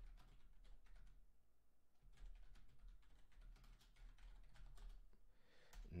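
Faint computer keyboard typing: a run of quick key clicks that thins out for about a second near the start, then carries on.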